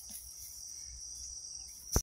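Steady, high-pitched insect chorus. A single sharp knock sounds near the end.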